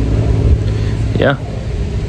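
A passing canal boat's engine running steadily as a low hum. A man says "yeah" about a second in.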